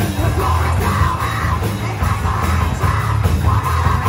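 Heavy metal band playing live in a rehearsal room: electric guitars, bass and a Tama drum kit under a yelled lead vocal delivered in long held lines.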